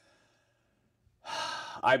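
About a second of near silence, then a man's breathy sigh, lasting about half a second, runs straight into speech.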